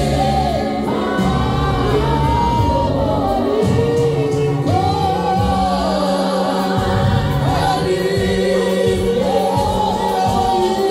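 A small group of men and women singing a South African gospel worship song together through handheld microphones and a PA, several voices in harmony over sustained low bass notes.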